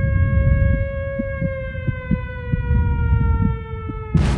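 A siren-like sound-effect tone, held and then slowly falling in pitch, over a low rumble.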